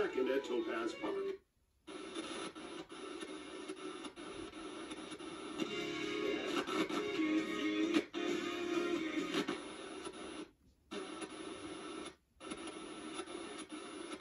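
FM radio broadcast, talk and music, from a QUAD FM3 tuner played through small computer speakers as it is tuned across the band. The sound drops to silence briefly three times, where the tuner's muting cuts in between stations.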